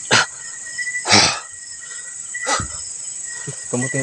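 Night chorus of crickets and other insects: a steady high-pitched buzz with a thinner trill pulsing in and out. Three short scuffs cut across it, the second, about a second in, the loudest.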